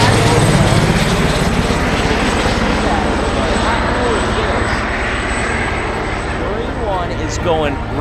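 Presidential transport helicopter flying low overhead, a dense rotor and turbine rumble that slowly fades as it moves away.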